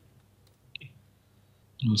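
A brief, faint click of a computer mouse button about a third of the way in.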